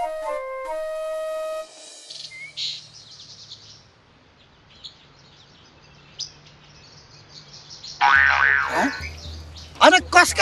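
A flute melody that stops about two seconds in, followed by birds chirping faintly now and then over quiet outdoor ambience. About two seconds before the end, a loud swooping sound effect with a low hum comes in.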